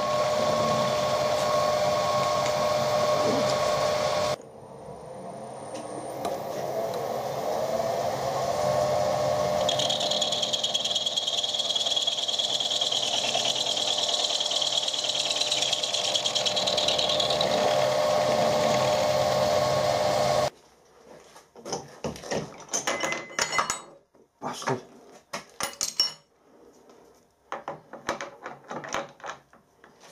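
A milling machine runs as an end mill takes a decent cut on a brass rod held in a hex collet block, machining a flat of a hex. It makes a steady whine with a higher cutting tone in the middle and dips briefly about four seconds in. It cuts off suddenly after about twenty seconds, and a few clicks and knocks follow.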